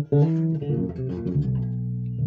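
Five-string Dragonfly CJ5 electric bass played fingerstyle on the rear pickup in passive mode with the tone up. A quick run of plucked notes is followed, from a little past halfway, by one low note left ringing.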